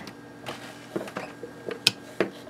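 Rotary range switch of a Cornell-Dubilier RDB resistance decade box being turned by its chicken-head knob: a few light ticks, then one sharp detent click near the end as the switch steps from the 1K to the 2K position.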